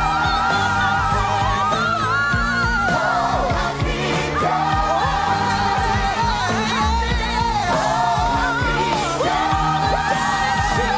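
Live gospel performance: a solo voice sings long held notes with vibrato and slides between pitches, backed by a choir and band.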